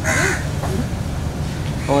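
A crow caws once, briefly, right at the start, over a steady low background hum.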